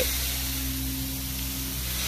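Everest 650 truck-mounted carpet extractor running through its vacuum hoses: a steady low hum with an even airy hiss.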